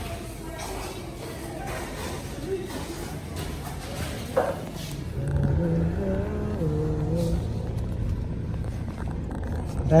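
Indistinct voices and room noise, then about halfway a change to a car cabin: a steady low rumble of the car's engine at idle with a voice over it.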